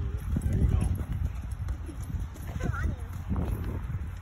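Horse walking on a dirt arena, its hoofbeats heard as a loose, uneven series of dull steps.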